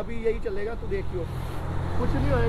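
A motor vehicle engine running steadily at low revs, a low hum that grows about half a second in, with faint voices over it.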